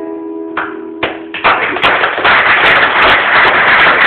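The last acoustic guitar chord of a live song rings out, then audience applause breaks out about a second and a half in.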